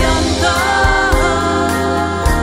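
Slow Finnish ballad: a woman's singing voice holds a long note that dips in pitch around the middle, over a steady instrumental accompaniment with sustained bass notes.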